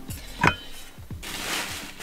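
A metal exhaust pipe clinks against a kitchen scale about half a second in, then scrapes for about a second as it is lifted off. Background music with a deep, repeating beat plays underneath.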